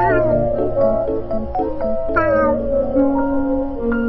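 Background music with a cat meowing twice over it: a short meow falling in pitch at the start, and another about two seconds in.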